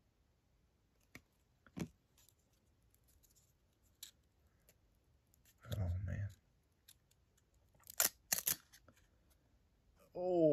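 Glossy trading cards handled between fingers: a few soft clicks and taps, then two sharp, crisp snaps about eight seconds in.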